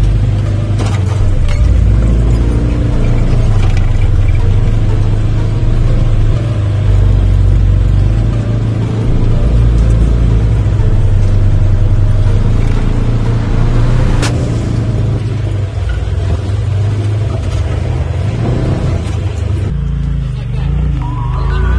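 Side-by-side UTV engine running as it crawls a rocky trail, mixed with background music that has a heavy bass line. There is one sharp click about two-thirds of the way through.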